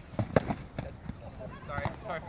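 Foam-padded boffer swords striking padded shields in a sword-and-board bout: several quick, sharp knocks in the first second, followed by a brief vocal sound from a fighter near the end.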